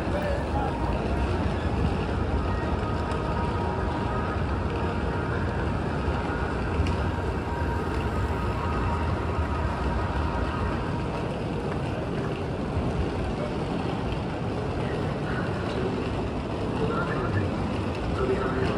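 Busy city-street ambience: a steady wash of urban noise with passers-by talking.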